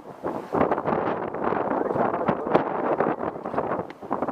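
Wind buffeting a microphone on an open boat at sea: a continuous rough rush with irregular gusty bursts, and one sharp click about two and a half seconds in.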